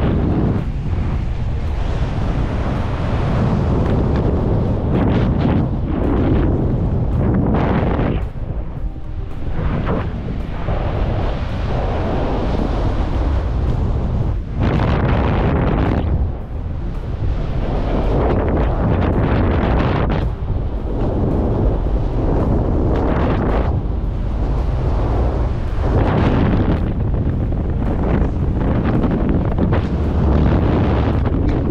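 Wind rushing loudly over a wrist-mounted camera's microphone in skydiving freefall, buffeting steadily with brief dips in level every few seconds.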